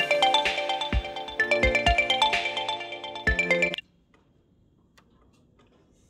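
Smartphone ringtone for an incoming call: a melodic tune of chiming notes with a few low thumps, which cuts off abruptly about two-thirds of the way through.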